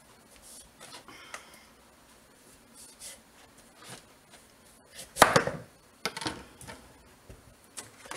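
A large kitchen knife cutting a raw pumpkin: faint scraping strokes as the peel is shaved off, then a sharp chop through the flesh onto the cutting board a little after halfway, followed by a couple of lighter knocks.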